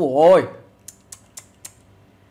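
A brief voice sound at the start, then four light keyboard-key clicks about a quarter second apart.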